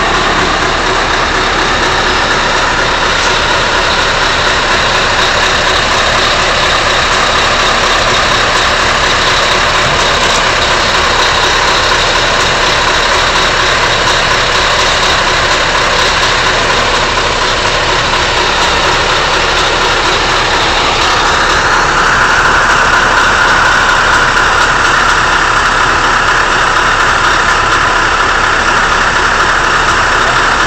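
Diesel engine of a Scania crane truck running steadily, powering the crane. About two-thirds of the way through a higher whine joins in as the crane works.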